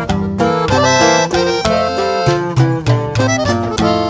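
Norteño-banda instrumental passage: an accordion plays the melody over a rhythmic tuba bass line and guitar accompaniment.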